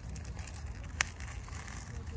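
Plastic wrapper of a feminine pad crinkling as it is handled and opened, with one sharp click about a second in, over a steady low rumble.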